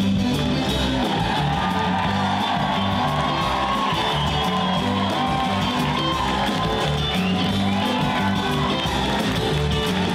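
A live band with electric guitars, bass and drums plays a guitar-led tune, recorded raw through a camera's microphone in a hall. The audience claps and cheers over the music for most of the stretch.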